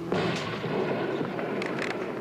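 Aerial bomb exploding: a sudden boom just after the start, then a rolling rumble with a few sharp cracks.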